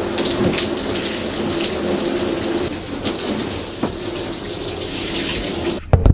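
Water running steadily from a bathroom sink tap, shut off suddenly near the end.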